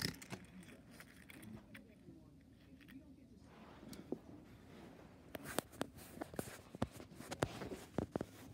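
Faint handling noise: scattered small clicks and taps, sparse at first and thickest over the last three seconds.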